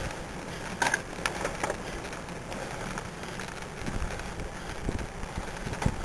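Wind and road noise on a bicycle-mounted camera while riding, with a few sharp knocks or rattles, the loudest about a second in and another near the end.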